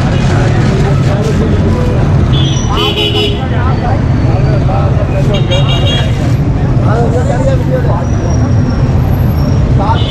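Busy street traffic: a steady rumble of vehicle engines, with horns tooting briefly about two and a half seconds in and again about five and a half seconds in.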